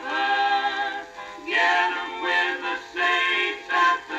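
A gospel hymn sung in close harmony by mixed voices with guitar accompaniment, playing from a 78 rpm shellac record on a suitcase record player. The sound is thin, with no bass, and the sung phrases break briefly twice.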